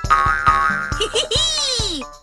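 Upbeat children's background music with a cartoon sound effect laid over it: about halfway through, a boing-like swoop that falls steadily in pitch.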